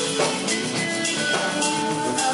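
Live band playing a song, with a drum kit and percussion keeping a steady beat under sustained instrument notes.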